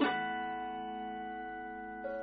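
Guitar chord plucked once and left to ring, slowly fading, over steady sustained tones.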